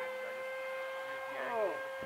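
Electric motor and propeller of a Flite Test Scout RC plane flying overhead: a steady whine that holds one pitch, with a faint voice partway through.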